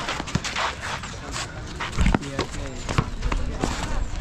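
Players calling out during a basketball game, with several sharp knocks from the ball on the hard court.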